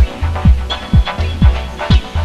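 Dub techno track: a steady four-on-the-floor kick drum about twice a second, a deep held bass note filling the gaps between kicks, and chord stabs and hi-hats above.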